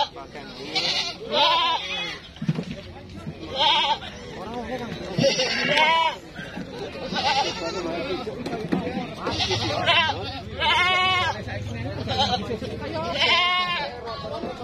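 Goats bleating repeatedly, one wavering call after another every second or two, from several animals in a crowded pen.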